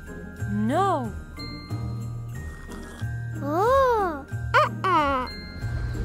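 Light cartoon background music with tinkling, bell-like notes. Over it a cartoon character's wordless voice makes long sounds that rise and fall in pitch, about a second in and again near four seconds, then a quicker pair just before five seconds.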